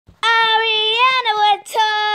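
A child singing an intro in a high voice, two long held notes with a brief break about one and a half seconds in.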